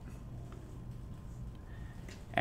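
Quiet room tone: a steady low hum with one faint click about half a second in and a faint thin tone near the end.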